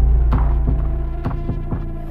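Trailer soundtrack: a deep bass drone under sustained tones, with a steady pulse of sharp ticks about three a second, slowly fading.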